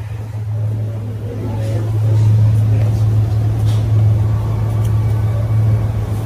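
Steady low hum of street traffic and idling vehicles at a city curb, with faint voices in the background.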